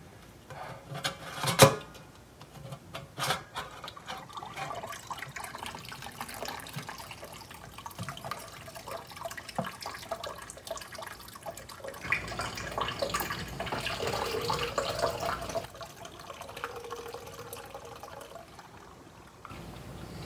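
Thawed tomato water trickling from a tilted stainless steel stockpot into a plastic pitcher, strained past the pot's lid held against the rim. A couple of sharp clicks come in the first few seconds, and the pouring is louder from about twelve to sixteen seconds in.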